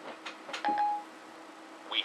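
A couple of light clicks, then a short single beep from an iPhone 4S: Siri's tone marking the end of the spoken question, before it answers.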